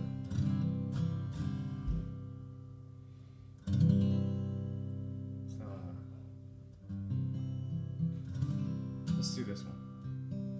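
Acoustic guitar played slowly: chords strummed and left to ring out and fade, with strong new strums about four and seven seconds in.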